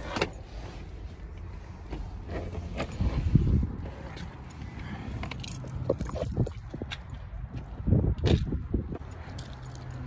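Scattered clicks, rustles and a few knocks as a person climbs out of a car with a phone in hand and walks off, over a low steady rumble.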